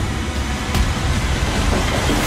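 A steady loud low rumble with a hiss over it, the kind of dark sound-design bed used under a thriller trailer.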